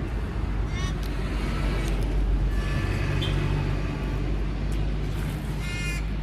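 Steady low rumble of a motor vehicle engine running nearby, growing stronger about halfway through.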